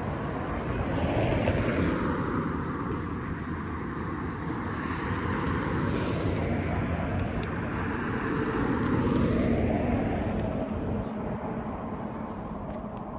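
Cars driving past on the road close by, their tyre and engine noise swelling and fading, loudest about two seconds in and again near nine seconds.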